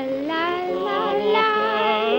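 A high voice singing with vibrato over sustained orchestral accompaniment.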